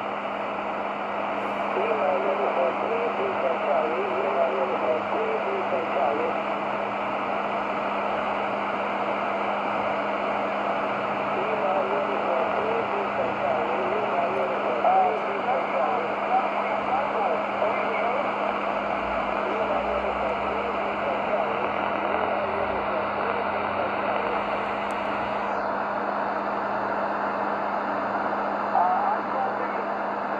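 Tecsun PL-600 shortwave receiver on the 10 m amateur band in SSB mode: steady hiss and static with a weak, garbled single-sideband voice of a distant ham station calling CQ DX, over a steady low hum.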